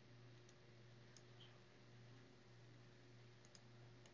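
Near silence: a low steady hum with a few faint computer mouse clicks.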